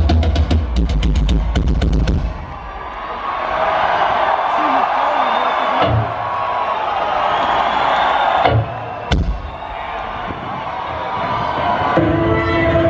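Live rock band playing loudly with a full drum kit and rapid cymbal hits, stopping about two seconds in. Then a concert crowd cheering and screaming, with a couple of single low drum thumps and a sharp hit near the three-quarter mark.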